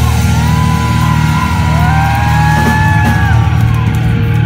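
Live punk rock band playing loud, with heavy distorted electric guitar and bass under long high notes that slide and waver above.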